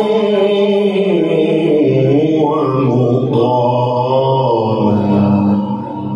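A man's voice reciting the Quran in the melodic, chanted tilawat style, drawing out long held notes that rise and fall in pitch; the phrase trails off near the end.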